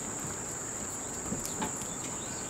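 Insects chirping in a steady, high-pitched drone, with a couple of faint knocks about a second and a half in.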